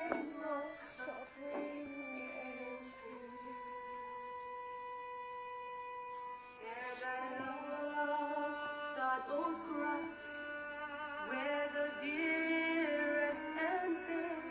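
A woman singing a slow, mournful song into a microphone, holding one long note for several seconds and then moving into ornamented, wavering phrases.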